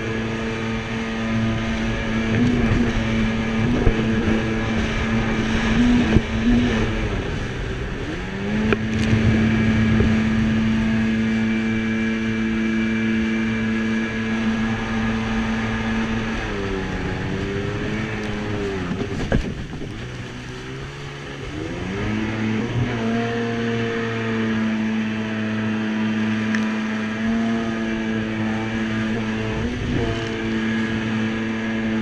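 Jet ski engine running hard at speed across choppy water, a steady high note that drops and climbs back as the throttle is eased and reopened: about eight seconds in, again around seventeen seconds, and in a longer sag around twenty to twenty-two seconds. Sharp knocks and rushing spray are mixed in.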